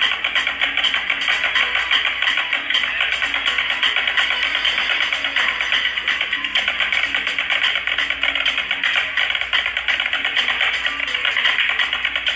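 Snare drum on a stand, played with sticks in a fast, unbroken stream of strokes and rolls.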